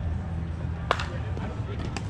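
Softball bat striking a pitched ball: a single sharp crack about a second in, with a short ring.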